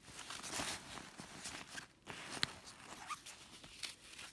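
Rustling and crinkling of a nylon parachute-fabric tote bag being handled and turned over, with a sharp click about two and a half seconds in.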